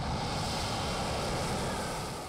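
Fighter jet's engines roaring steadily as the jet moves along the runway, fading slightly near the end.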